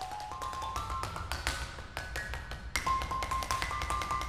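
Marimba played with mallets in a fast run of quick, sharply struck notes. The notes climb stepwise in pitch over the first second and a half, then keep moving among higher notes, over a low rumble.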